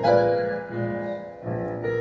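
Upright piano played live: a chord struck at the start and held, then new notes about a second and a half in.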